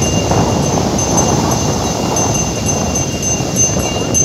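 Sea surf breaking and washing in over shoreline rocks: a loud, steady rush.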